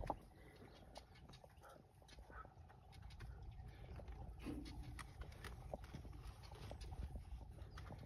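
Quiet sounds of a hen straining to lay in a straw nest box: scattered faint clicks and rustles over a steady low rumble, with one brief soft low note about four and a half seconds in.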